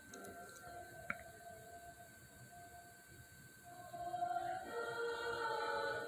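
Women's choir singing held chords, played back through a television's speakers and picked up in the room. The singing stays soft, then swells louder about four seconds in, with a single short click about a second in.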